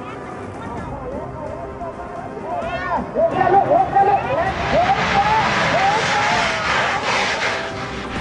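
Giant spinning-top firework (petasan gasing) burning its powder charge as it lifts off: a loud rushing hiss swells from about three seconds in. Over it, a crowd of onlookers shouts and cheers.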